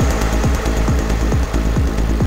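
Techno from a DJ set: a steady four-on-the-floor kick drum about two beats a second, each kick a falling thud over a continuous bass, with ticking hi-hats above.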